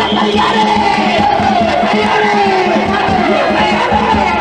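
Danjiri festival music from the float, a rapidly beaten taiko drum with steady ringing higher tones, under a crowd of men's voices chanting and shouting.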